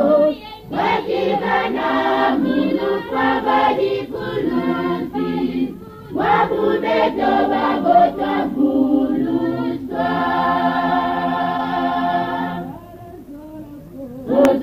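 A choir singing in phrases, with a long held chord about ten seconds in that dies away near the end.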